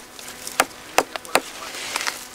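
A handful of sharp, irregular taps on the gnarled bark of an old olive trunk, about six in two seconds.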